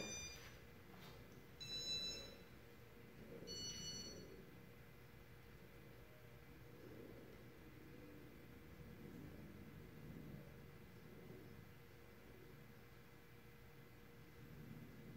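Three short high-pitched electronic beeps, about two seconds apart, from the Casablanca ceiling fan's wall-control electronics as the W11 control is worked. After them there is only the faint, steady low hum of the running fan.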